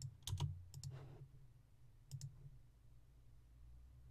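A few computer mouse button clicks, some in quick pairs, in the first two and a half seconds, over a faint steady low hum.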